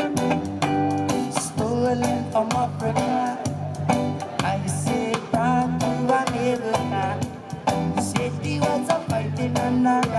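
A man singing a reggae song live with guitar, over a steady, rhythmic bass accompaniment.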